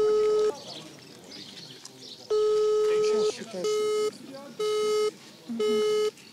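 Telephone call tones played through a smartphone's loudspeaker: two long beeps about a second each, then three shorter beeps about a second apart. The call to the mill goes unanswered.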